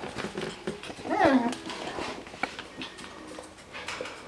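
Six-week-old Coton de Tulear puppies play-wrestling, with one short high yelp that falls steeply in pitch about a second in, amid scuffling and light clicks.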